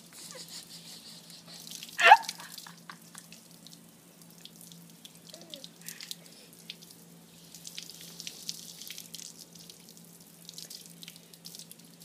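Water from a garden hose spattering and splashing on a tiled patio floor in an uneven crackle of small drips and splashes. A brief high-pitched squeal stands out about two seconds in.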